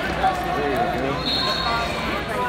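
Coaches and spectators calling out at the mat side of a wrestling bout: several voices over each other, with a brief high steady tone a little past halfway.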